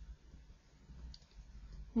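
Faint clicks and taps of a stylus on a graphics tablet as handwriting is written, over a low steady hum.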